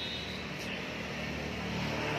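Steady street background noise with a low, engine-like hum.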